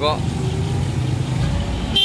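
Low, steady rumble of a motor vehicle's engine, swelling slightly near the end.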